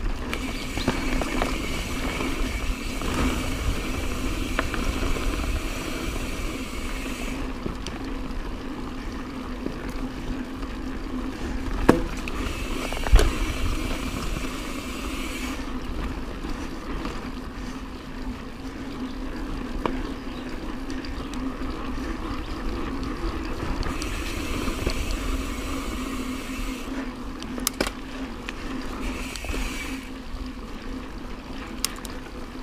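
Mountain bike rolling along a dirt forest trail: steady tyre and frame noise, with a high hiss that comes and goes in stretches. There are two sharp knocks a little under halfway through as the bike hits bumps, and a lighter one near the end.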